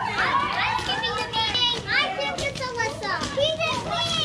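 Several children's high-pitched voices calling out over one another as they play, with no pause.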